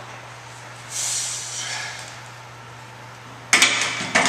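A lifter's forceful breath during a barbell bench press rep, lasting about a second and starting about a second in. Near the end, the loaded Olympic barbell clanks sharply against the steel rack's uprights as it is racked.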